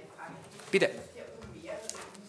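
A man's voice says one short word ('Bitte') in a quiet room; the rest is low room sound with a faint voice and a brief click near the end.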